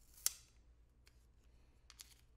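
A short, crisp plastic scrape-and-click from handling a small plastic jar of loose setting powder and its sifter lid, about a quarter second in, followed by a few faint ticks near the end.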